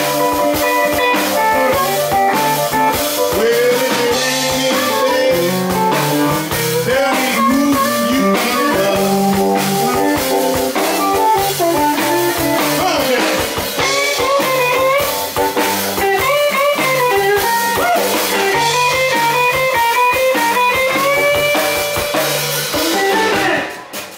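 Live blues band playing an instrumental stretch: electric guitar lead with bent notes over a drum kit. The music drops away sharply near the end.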